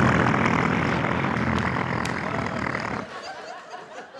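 A man's vocal impression of a diesel submarine engine, made close into a handheld microphone: a rough, noisy rumble lasting about three seconds that stops suddenly.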